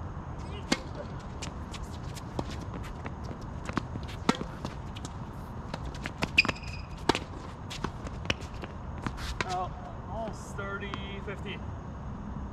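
Tennis point on a hard court: a series of sharp pops from rackets striking the ball and the ball bouncing, spread over the first eight seconds and loudest around six to seven seconds in. Players' voices call out near the end.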